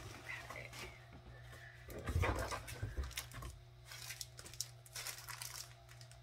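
Close-up crinkling and rustling of packaging and paper as a matted art print is lifted out of a subscription box, in scattered short bursts of handling noise.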